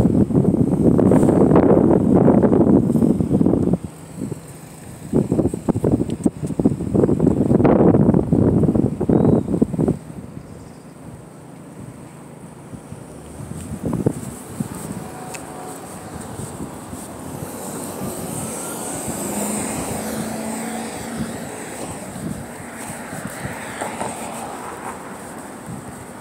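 Wind buffeting a phone microphone in two loud, ragged spells in the first ten seconds. Then steadier street traffic noise, with a vehicle's engine hum rising and fading past about two-thirds of the way in.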